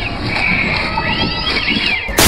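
An animal-like cry that rises and falls in pitch in long arching glides, over a noisy background.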